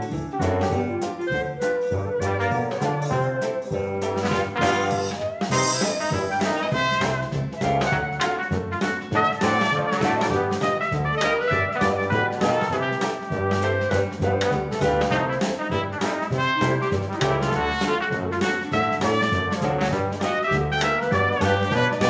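Upbeat jazzy background music led by brass, with a steady beat.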